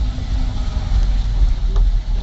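Steady low rumble of a vehicle's engine and road noise, heard from inside the cabin while driving.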